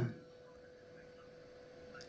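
Near silence: quiet room tone with one faint, steady, thin tone held throughout.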